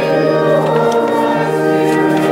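Church organ playing a hymn in held chords, with the congregation singing along.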